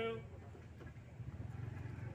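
A man calls out the count "two" once at the start, pacing a kalaripayattu stance drill, over a steady low rumble of background noise.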